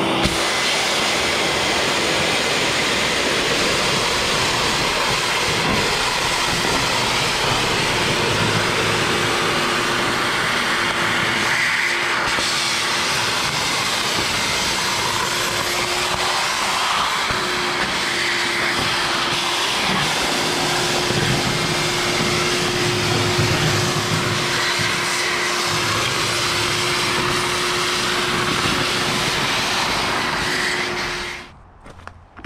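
Shop vac with its filter removed, running steadily with one steady tone through its rushing noise, its nozzle sucking up the water and cutting-dust slurry left in the bottom of a plasma table's water tray.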